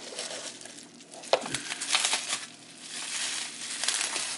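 Off-camera rustling and crinkling of objects being handled and searched through. There is a sharp click a little over a second in and more clatter around two seconds in.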